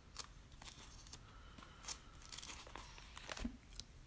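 Bible pages being leafed through: a scattering of faint, short paper rustles and crinkles.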